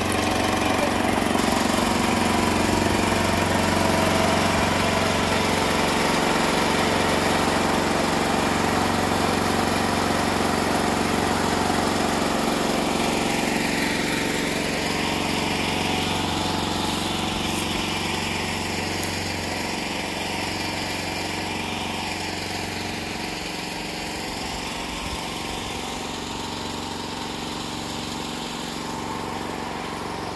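Small petrol engine of a portable generator for the water pump running steadily, growing fainter in the second half.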